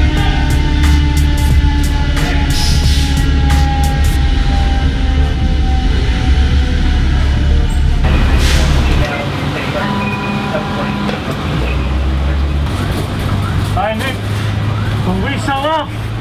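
A heavy vehicle's engine running steadily, mixed with background music. The sound changes about nine seconds in, and wavering pitched tones come in near the end.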